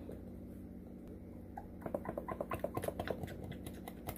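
Wooden spoon mixing mayonnaise into flaked tuna in a bowl: a run of quick, irregular soft clicks and taps starting about two seconds in, over a low steady hum.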